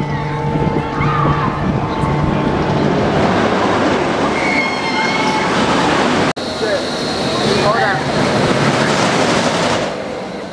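Steel roller coaster train running on its track, a loud steady rushing roar, with short high-pitched screams from riders above it. There is an abrupt cut about six seconds in.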